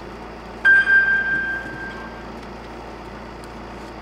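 A single high electronic chime about half a second in, ringing out and fading over about a second and a half, over the steady background noise of the waiting rally car.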